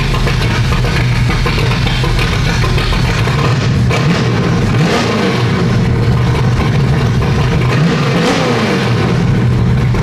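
1968 Plymouth Barracuda's engine idling in the shop, revved up and back down twice, about halfway through and again near the end.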